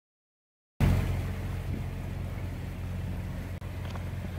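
A sailboat's inboard diesel engine running steadily while motoring on calm water: a low, even drone that cuts in suddenly about a second in, mixed with wash and air noise.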